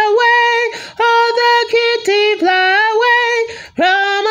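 A woman singing unaccompanied in long held notes, with short breaks between them and a longer pause near the end.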